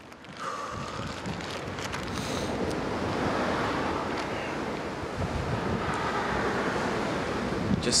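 Wind buffeting the microphone: a rough, fluctuating rushing noise that sets in about half a second in and carries on, with a man starting to speak at the very end.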